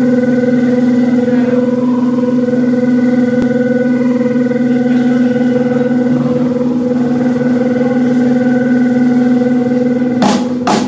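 Electric guitar held ringing through its amplifier as a loud, steady drone, a chord of several held tones that barely changes in pitch, between songs at a live rock gig.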